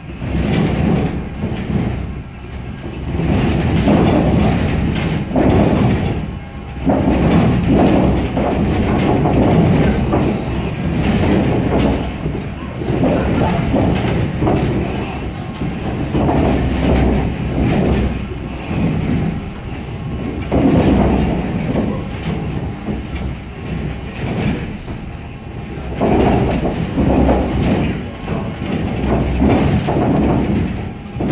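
Earthquake simulator playing out a projected magnitude 8.4 Nankai megaquake: a loud, continuous deep rumble and rattle that swells and eases in waves every few seconds.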